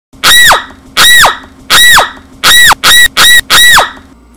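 A young woman's voice shrieking seven times in short, very high-pitched squeals, each ending in a sharp downward swoop, the last four quicker together. They are so loud they hit full scale and distort the webcam microphone.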